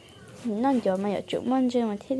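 Speech: a person talking, starting about half a second in after a brief quiet moment.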